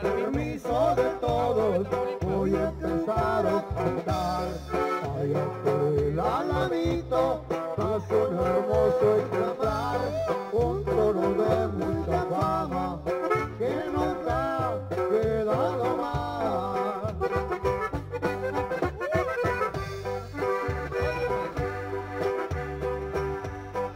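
Norteño-style music playing: an accordion melody over a steady bass beat.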